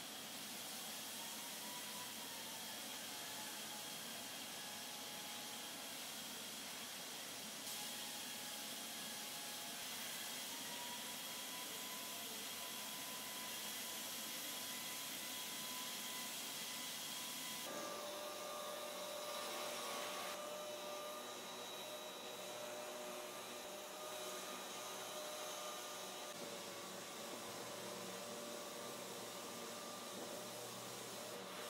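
Steady hissing ambience of a car factory, with faint steady machine tones over it. Its character changes abruptly about 8 seconds and 18 seconds in.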